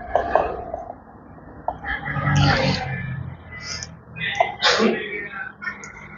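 Handling noise with a few small clicks, and short bursts of a man's voice, the loudest about two seconds in and another near five seconds.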